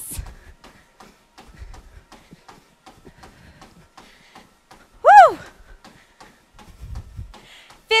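Quick, even footfalls of a runner sprinting on a treadmill belt, about three steps a second and faint. About five seconds in, a woman gives one loud whoop of 'woo!'.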